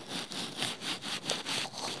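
Makeup brush with soft synthetic bristles brushed back and forth over an earphone's inline microphone and cable, a quick run of scratchy, hissing strokes about three or four a second.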